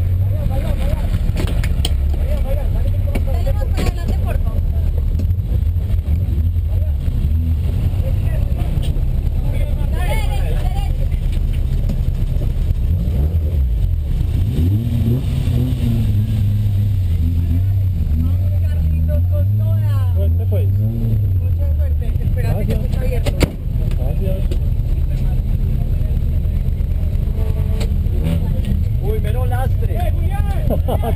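The engine of a 1979 Volkswagen Golf GTI race car idling steadily, heard loudly from inside the car. Its speed rises and falls a little in the middle, with voices chattering in the background.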